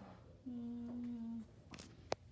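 A woman humming one steady held note for about a second, followed by a brief soft knock near the end.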